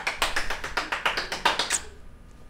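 A rapid, uneven series of sharp taps, about six a second, that dies down shortly before the end.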